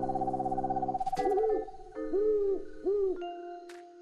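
A held musical chord with a fast tremolo fades out about a second in. It gives way to three owl hoots, each rising and falling in pitch, as a cartoon sound effect for nightfall, with a thin held note under the last part.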